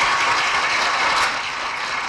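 Audience applauding, easing off slightly after about a second.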